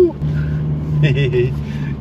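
Toyota Hilux Rogue's 2.8-litre four-cylinder turbo-diesel running at a steady drone while the truck drives through soft beach sand, with a brief voice sound about a second in.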